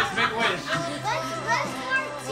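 Several children's and adults' voices talking over one another, with music underneath.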